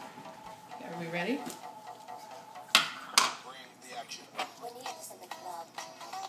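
Two sharp plastic clacks about half a second apart as a plastic food container is handled, over faint background music and low voices.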